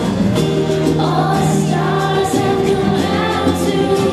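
A children's choir singing a Christmas song.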